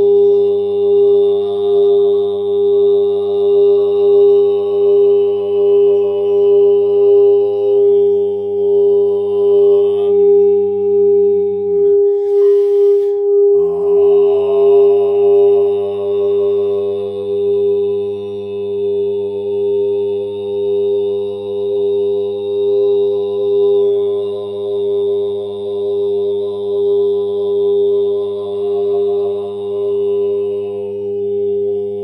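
A man chanting a mantra on one long held note over a steady drone that swells and fades about once a second. About twelve seconds in his voice breaks off for a breath while the drone holds, then he resumes.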